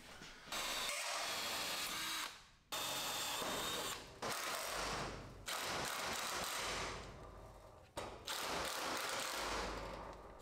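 Power drill running in about five bursts of one to two seconds each with short pauses, working into the sheet-metal garage door and lock bracket to drill holes for sheet metal screws.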